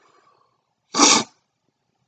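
A single short, breathy burst from a person about a second in, such as a sharp exhale or a small sneeze.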